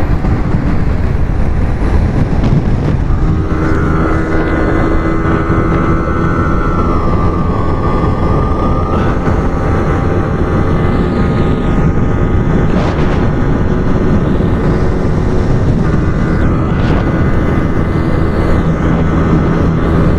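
Yamaha R15 V3's single-cylinder engine running hard and steady at high revs in sixth gear near its top speed, with wind rushing over the microphone.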